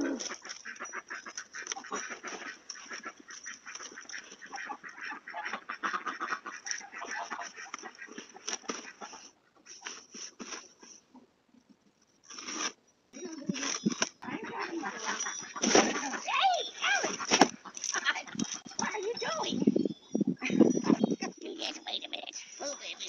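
Domestic ducks quacking over a running clatter of small clicks and knocks. The sound drops out almost entirely for a few seconds near the middle.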